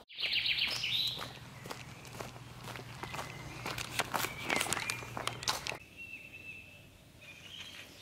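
Footsteps in running shoes on a dirt woodland path, with birds chirping. The steps stop suddenly near the end, leaving fainter birdsong.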